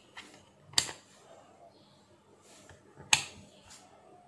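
A few sharp plastic clicks from an LCR meter's rotary range dial being turned: a loud click a little under a second in and a louder one about three seconds in, with fainter clicks between.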